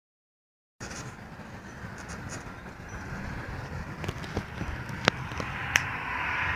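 A steady mechanical running noise starts about a second in and slowly grows louder, with a few sharp clicks near the end.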